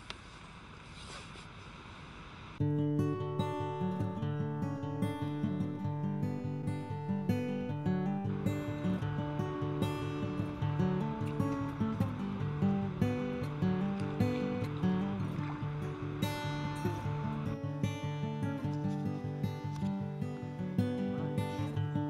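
Background music of plucked and strummed acoustic guitar. It comes in suddenly about two and a half seconds in, after a faint steady background hiss.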